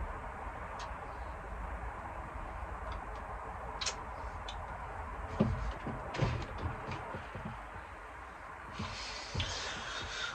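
Steady low room hum with a few faint clicks and a couple of soft knocks around the middle.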